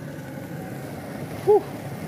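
A steady hiss and low rumble, with a man's short 'whew' about one and a half seconds in.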